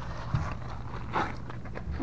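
Footsteps and soft scuffs on gravel, a few scattered noises over a low steady hum.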